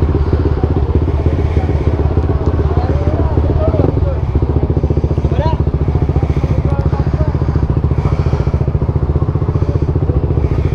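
Motorcycle engine idling close by with an even, steady beat, and faint voices in the background.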